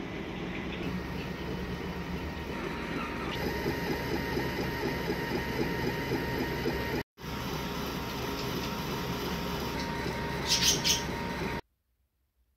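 Longer Ray5 10W diode laser engraver running an engraving job on a bottle on a rotary: a steady mechanical whir with a motor whine that steps in a repeating pattern. It cuts out suddenly for a moment just past halfway, and a brief higher-pitched warble comes near the end.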